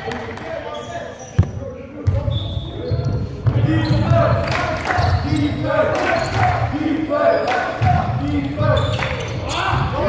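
Basketball game in a sports hall: the ball bouncing on the wooden court as play goes on, with players' voices calling and the hall's echo. One sharp bang comes about a second and a half in.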